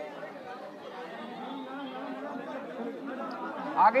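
Crowd chatter: many people talking over one another at close range. A single voice comes in louder near the end.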